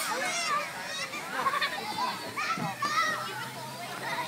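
Many young children playing together: overlapping high-pitched shouts, squeals and chatter.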